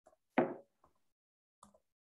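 A single sharp knock about half a second in, fading quickly, with a few faint clicks around it.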